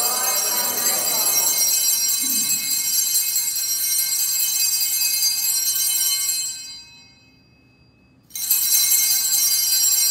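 Altar bells (sanctus bells) being rung at the elevation of the consecrated host, a bright shaken ringing of several small bells. It stops about two-thirds of the way in, then starts again suddenly a second or two later.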